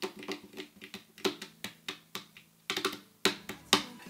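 Hands tapping and slapping on the body of an acoustic guitar as a makeshift drum roll: a run of quick, uneven taps with a faster flurry near the end, over a faint steady low tone.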